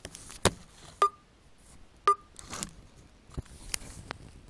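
Handling noise from a phone being moved against clothing: a string of sharp clicks and taps with rustling between, two of the taps leaving a brief ring.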